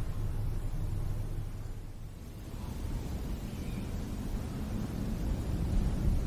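A low, steady rumbling noise with no music or voice, its level dipping slightly about two seconds in.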